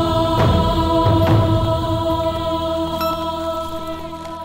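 Film background score: a chanting, choir-like drone of several held tones that slowly fades through the second half.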